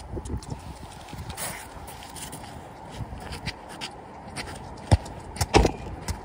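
Steady background hiss with small scattered knocks, then near the end two sharp thuds of a football, about two-thirds of a second apart: it is kicked and then strikes close to the phone by the goal.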